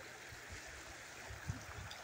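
Faint, even rush of a river's flowing water at very low water.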